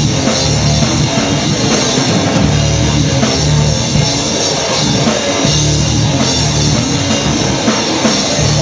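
Hardcore punk band playing live and loud, with guitar and drum kit, in an instrumental stretch without vocals.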